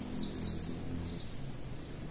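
Bird chirps: a few short, high, falling notes near the start and again about a second in.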